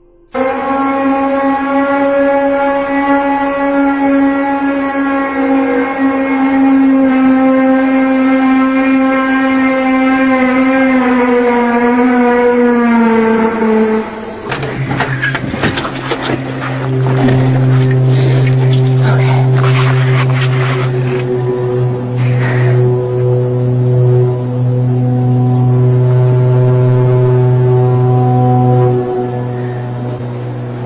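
A loud, low, horn-like drone with many overtones that slowly sinks in pitch over about fourteen seconds. After a cut comes a deeper, steadier drone of the same kind, with crackling and rustling over it for several seconds, and it drops away near the end.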